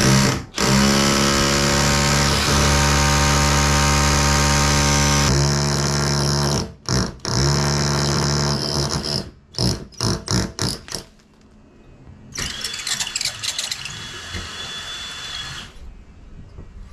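DeWalt drill with a long masonry bit drilling into a brick wall: the motor runs steadily at full speed for about five seconds, then in a string of short on-off bursts. After a brief lull, a rougher drilling sound with a high whine follows for the last few seconds as the bit works through the brick.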